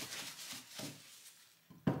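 Soft rustling and light knocks of gloved hands handling cured soap on the grey plastic slotted base of a wire soap cutter, dying away about one and a half seconds in.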